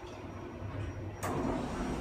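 Kone EcoDisc lift car running with a low, steady rumble, then a sharp click a little after a second in as it arrives and the doors start to slide open.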